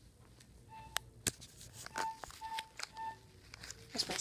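Four short, same-pitched electronic beeps spaced about half a second to a second apart, with a few light clicks in between.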